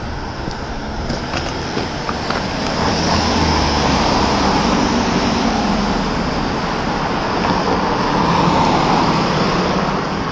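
Road traffic on a city street: cars driving past, the noise of engines and tyres building about three seconds in and staying up before easing near the end.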